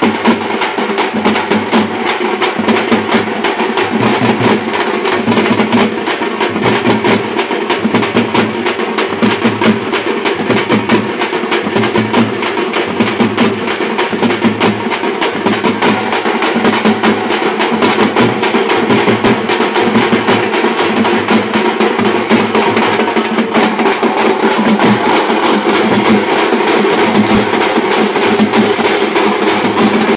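A troupe of thappu (parai) frame drums beaten with sticks in a fast, loud, continuous rhythm, many drums striking together.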